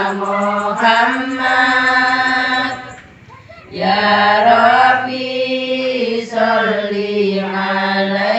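A group of women and girls singing an Arabic sholawat together in unison, in a chant-like melody of long held notes. The singing breaks off for a breath about three seconds in and starts again.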